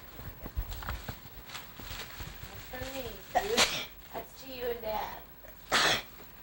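Tissue paper crinkling as a Christmas gift is unwrapped, in two short loud bursts, about halfway through and again near the end, with quieter rustling between. A faint voice murmurs in between.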